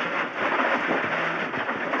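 Cabin noise of a rally car at speed on a gravel stage: the engine running under load beneath a steady hiss and patter of gravel thrown against the underbody.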